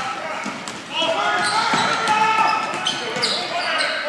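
A basketball being dribbled on a hardwood gym floor, with repeated bounces and voices in the gym around it.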